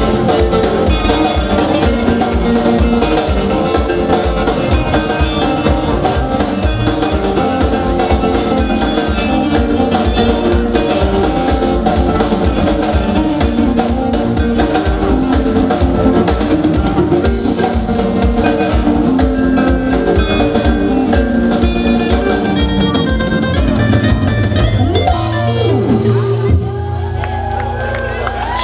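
Live band playing an up-tempo song, led by a drum kit with steady fast beats under electric guitar and bass lines. The music thins out and drops slightly in level near the end.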